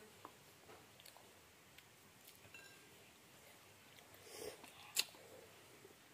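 Quiet eating sounds: faint chewing and a few light clicks of chopsticks and a fork against ceramic bowls, with one sharper click about five seconds in.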